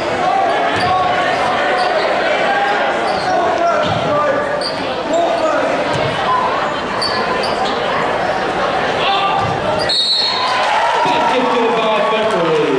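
Basketball game in a gym: a ball dribbling against the hardwood floor under steady crowd chatter, with a short shrill referee's whistle about ten seconds in.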